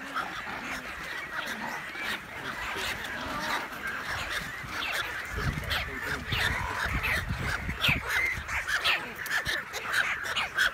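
Colony of nesting American white pelicans and cormorants calling: many short, overlapping calls throughout. Bursts of low rumble on the microphone from about five seconds in.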